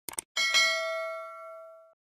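Sound effect of a subscribe-button animation: a quick double click, then a notification-bell ding that rings out and fades for about a second and a half before cutting off.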